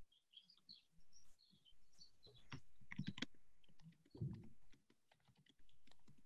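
Faint typing on a computer keyboard: irregular clicking keystrokes, with a short low muffled bump about four seconds in.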